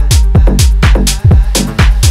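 Instrumental section of a Brazilian bass / deep house track: a steady kick drum about twice a second over deep bass, with bright hi-hat hits between the kicks and no vocals.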